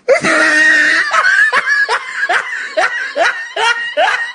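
A person laughing hard: one long held note, then a quick run of short rising 'ha' bursts, about four a second.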